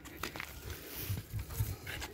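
Footsteps on a paved path: a few soft, irregular thuds with light scuffs.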